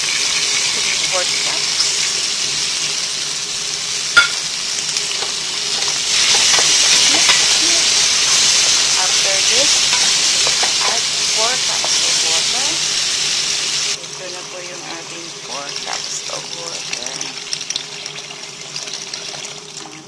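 Lentils, tomato, carrot and potato sizzling in hot oil in a pot while stirred with a wooden spoon. The sizzle grows louder about six seconds in and drops off sharply around fourteen seconds, with one sharp knock of the spoon near four seconds.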